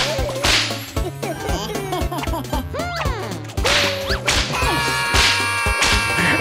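Cartoon whip-crack sound effects, three loud cracks with a swish, over bouncy background music with a repeating bass line and sliding cartoon squeaks.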